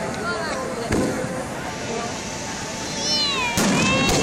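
Fireworks: a steady hiss under a sharp bang about a second in and two more bangs near the end, as bursts go off. Crowd voices run underneath, with high falling cries just before the last bangs.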